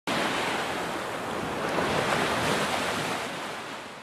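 Surf washing onto a beach: a steady rush of breaking waves that fades out near the end.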